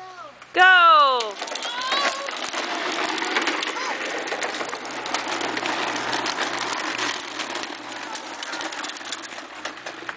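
A long shout about half a second in, then toy wheels rolling and rattling on a concrete driveway for the rest, a steady rough scraping noise as two toddlers push their ride-on toys along.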